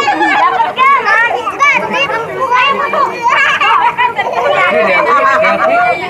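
A group of children shouting and chattering over one another, high-pitched and continuous, as they scramble together over a basin.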